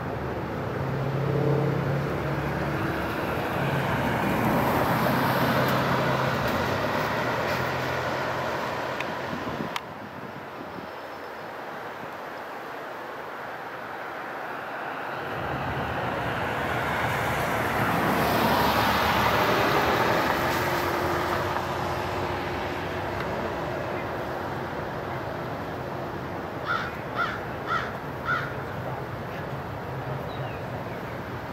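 Cars passing on a road, the noise swelling and fading twice, with a sudden drop about ten seconds in. Near the end a crow caws four times.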